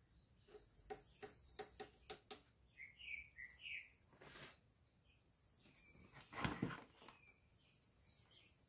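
Multimeter test leads and their clips being handled on a wooden workbench: a quick series of small clicks in the first two seconds, then one louder knock about six and a half seconds in. A bird chirps faintly a few times in the background.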